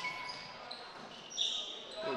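Volleyball play on a hardwood gymnasium floor: short, high sneaker squeaks rise out of the hall's crowd noise, strongest about one and a half seconds in. A held whistle-like tone ends right at the start.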